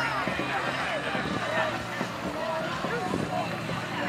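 Indistinct talking of several people nearby: voices chattering with no clear words.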